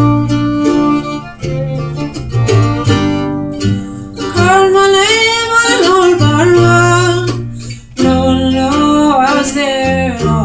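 Folk string band playing live: acoustic guitar and mandolin chords over an upright bass line, with a wavering lead melody on top that is strongest in the middle and near the end.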